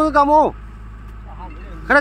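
Loud shouted calls in a person's voice at the start and again near the end, over a steady low hum.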